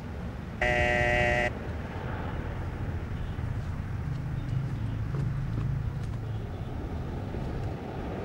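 An electric doorbell rings once, a steady buzzing tone lasting just under a second, over a steady low rumble.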